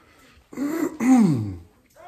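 A man clearing his throat: a rough rasp about half a second in, then a voiced sound that falls in pitch, over in about a second.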